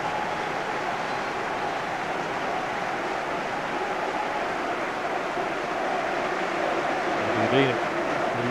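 Football stadium crowd cheering a goal, a steady, unbroken wash of many voices.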